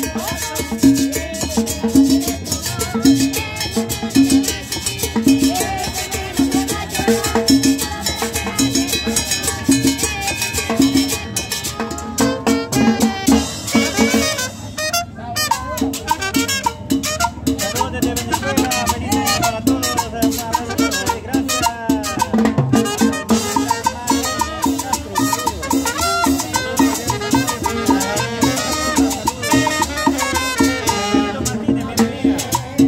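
A live Latin dance band plays upbeat music with trumpet and upright bass over a steady beat of about two pulses a second.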